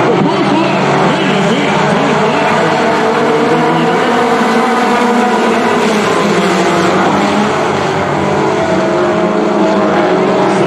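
A pack of dirt-track stock cars racing together, many engines running hard at once at a steady, loud level. Several engine pitches overlap and waver up and down as the cars lift and get back on the throttle through the turn.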